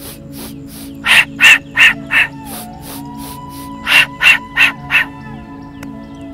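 A man doing a pranayama breathing exercise: two sets of four sharp, hissing breaths, about three a second, over background music.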